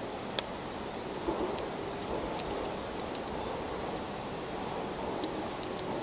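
Steady rushing outdoor noise, with a few faint sharp clicks, the clearest one shortly after the start.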